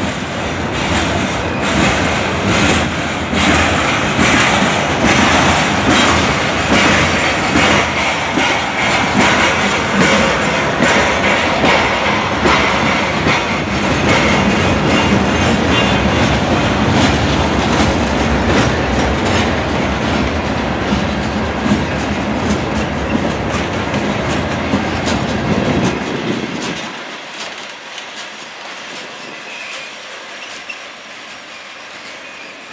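Loaded CSX open-top hopper cars of a stone train rolling past at close range. Their wheels make a steady rumble with a running clickety-clack over the rail joints. About 26 seconds in, the sound drops to a quieter, thinner rumble.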